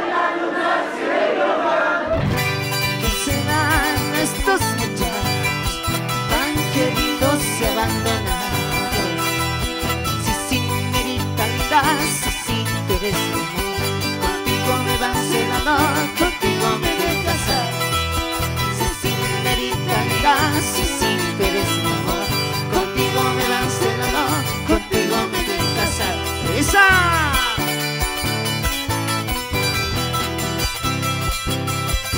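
Live band music: a strummed charango and guitars over bass and a steady drum beat. The full band comes in about two seconds in, after a thinner opening without bass.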